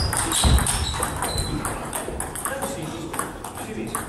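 Table tennis ball being struck by rackets and bouncing on the tables as a series of sharp clicks, with rallies on several tables at once in a large hall.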